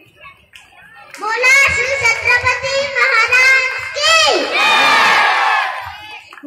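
A group of children shouting and cheering together, starting about a second in and running for several seconds.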